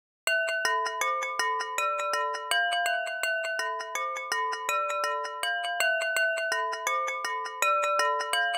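A sampled wine-glass tap played as a pitched instrument through a fast tape delay: a quick, even stream of bell-like glassy notes and their echo repeats, stepping between a few pitches in a simple pattern. It starts about a quarter second in.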